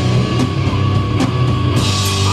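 A rock band playing live and loud, with drum kit and instruments over a steady low bass, and a few sharp drum or cymbal hits.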